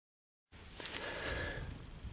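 Silence, then about half a second in the outdoor sound of a detecting dig cuts in: a low rumble with light rustling and a few soft clicks around a freshly dug hole in a field.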